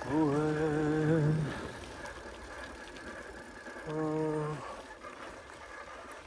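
A low voice singing two long held notes with a slight waver, the first lasting about a second and a half, the second shorter about four seconds in, over the steady noise of a bicycle ride.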